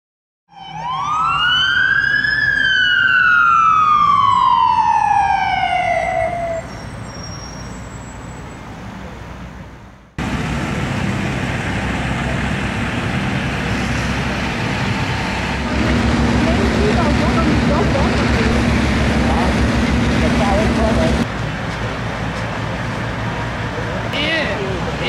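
A fire engine siren winds up to its peak about two seconds in, then slowly winds down over the next four seconds and fades. After a cut comes the steady din of engines and voices at the fire scene, with a steady low engine drone from about sixteen to twenty-one seconds in.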